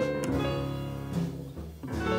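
Live jazz from a piano, bass and drums group: chords are struck about once a second and ring out under a plucked bass line.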